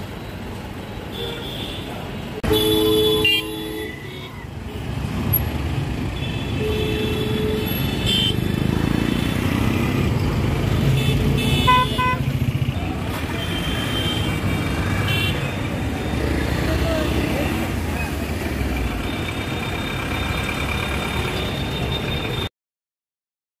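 Street traffic noise with vehicle horns honking: a loud horn blast about two and a half seconds in lasting about a second, then several shorter honks later on, over a steady rumble of passing traffic.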